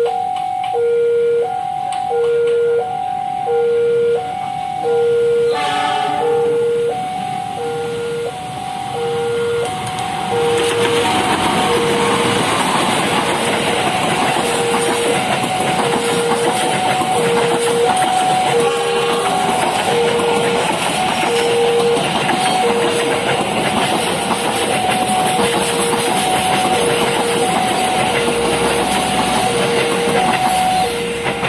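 Level-crossing alarm sounding a repeating two-tone chime in a steady beat, while a passenger train hauled by a CC 206 diesel-electric locomotive approaches. The locomotive gives a brief horn blast about six seconds in. From about ten seconds on, the train passes close by with a loud rumble of wheels on the rails.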